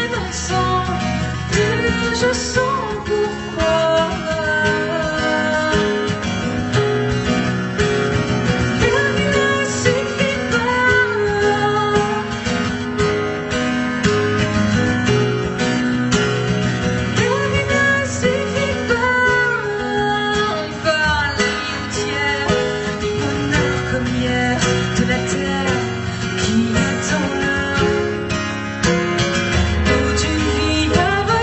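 A woman singing a French song live while strumming an acoustic guitar, the strummed chords running steadily under her voice.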